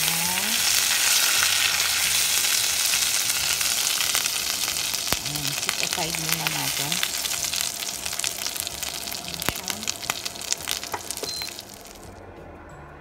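Olive oil sizzling in a frying pan as fried sardines are lifted out, with many sharp crackles and clicks through the hiss. The sizzle eases in the last few seconds and stops suddenly at the end.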